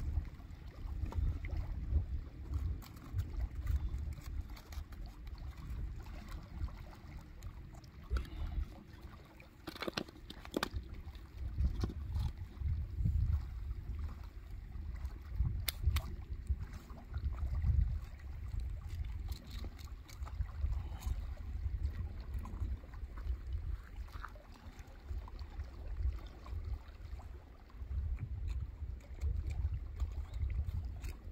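Wind rumbling on the microphone, with a few sharp knocks of split firewood being set in place as an A-frame fire lay is built, two close together about ten seconds in and another a few seconds later.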